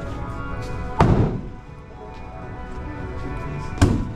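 A throwing axe hits the wooden target board with a sharp thunk about a second in, followed by a second, shorter knock just before the end, over steady background music.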